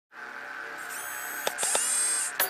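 Electronic intro sound design: a steady buzzing drone with high thin tones over it, a few sharp clicks about a second and a half in, then a bright hissing swell.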